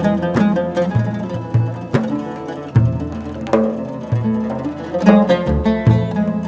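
Live instrumental ensemble music: an oud plucking a melody over low double-bass notes, punctuated by sharp hand strikes on a frame drum.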